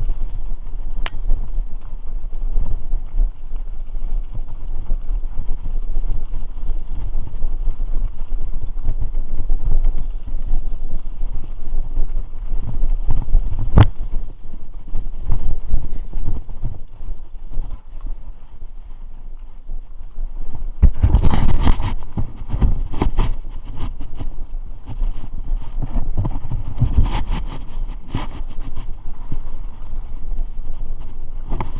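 Mountain bike riding a dirt singletrack: wind buffeting the camera's microphone over a steady rumble of tyres on the trail, with sharp clicks and the bike rattling over bumps, loudest in a rough stretch about two-thirds of the way through.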